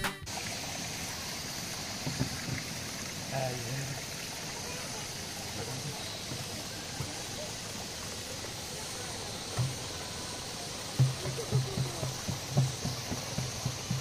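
Quiet outdoor background: a steady hiss, with faint brief low knocks and murmurs, more of them near the end.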